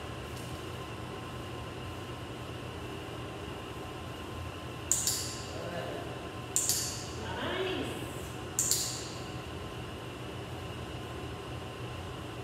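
Three sharp clicks of a dog-training clicker, about two seconds apart, starting about five seconds in. In shaping, each click marks the moment the dog gets the behaviour right and earns a treat. A steady machine hum runs underneath.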